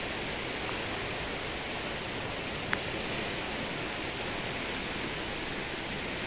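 Steady rushing of a river in flood, its muddy water running high and still rising.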